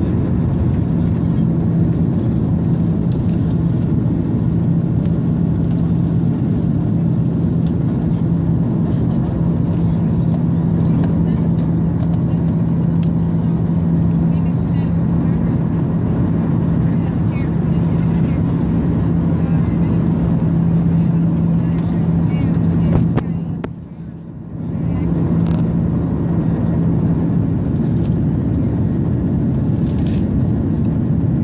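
Inside the cabin of an Airbus A330-200 during takeoff: its GE CF6-80E1 turbofan engines run at takeoff power through liftoff and the initial climb, a steady loud rush of engine and air noise over a constant low hum. About three quarters of the way through, the sound briefly drops in level for a second or two.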